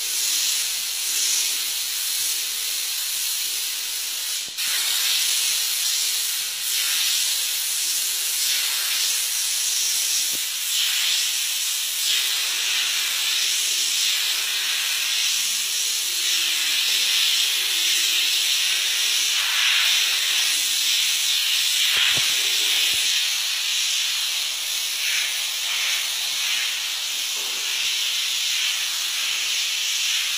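A continuous hiss that swells and eases in waves, with a few short sharp clicks.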